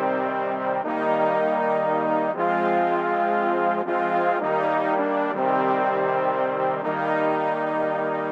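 Sampled brass section of trombones and trumpets (Session Horns Pro) playing a looping progression of sustained minor chords. The chords change every second or so, with the lows cut out.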